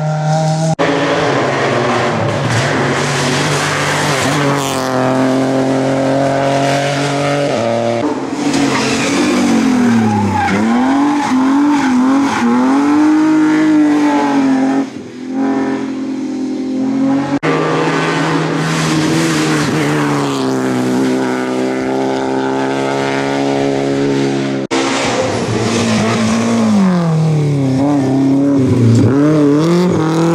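Rally cars run one after another through a tight bend, their engines revving hard: the engine note steps between gears, dips under braking and climbs again as each car accelerates away. The sound breaks off with sudden cuts several times as one car gives way to the next.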